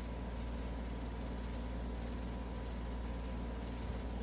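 Steady low background hum with a faint steady high tone, unchanging throughout; no distinct handling noises stand out.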